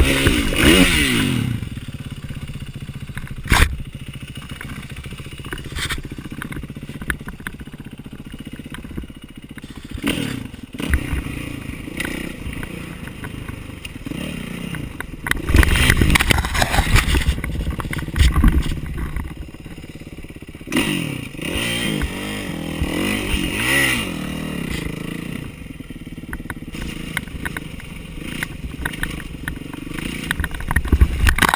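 Kawasaki KX450F single-cylinder four-stroke dirt bike engine running under changing throttle, its pitch falling early on and rising and falling again later, with clatter of the bike over rough ground. A loud, rough stretch comes about halfway through.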